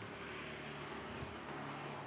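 A motor vehicle engine running: a low, steady hum with a broad wash of noise, easing briefly about a second in and then carrying on.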